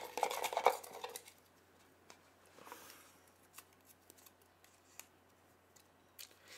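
Small handling sounds of a drawn paper raffle slip: a soft rustle in the first second, then a few light, sharp clicks spaced out over quiet.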